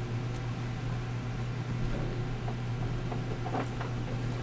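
Steady hum and hiss of a human centrifuge running at its baseline of about 1.5 G between profiles, heard inside the gondola. A faint brief rustle comes a little before the end.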